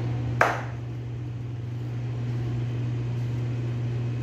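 One sharp chop of a large knife through raw chicken into a wooden cutting board, about half a second in, over a steady low hum.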